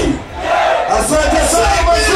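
Large concert crowd cheering and shouting, with a voice over the PA yelling shouts that fall in pitch and a low bass rumble underneath.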